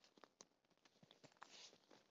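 Near silence, with a few faint clicks and a brief rustle about one and a half seconds in, as a hammock tent's fabric tarp cover is handled and fitted.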